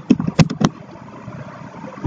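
Computer keyboard keystrokes: about four quick, sharp key clicks in the first second, then a faint steady background hum.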